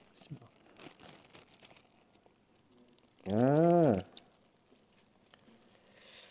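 A thin plastic bag crinkling faintly as it is torn open with the teeth, then about three seconds in a man's short hum, rising then falling in pitch, the loudest sound.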